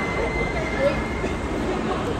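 Steady low background din with faint scattered voices, and a thin steady high tone that fades out about one and a half seconds in.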